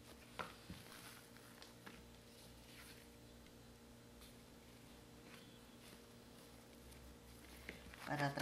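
Near silence with faint handling sounds of dough being cut and worked: a few soft, scattered taps and scrapes from a plastic bench scraper and hands on a silicone baking mat, over a low steady hum of room tone.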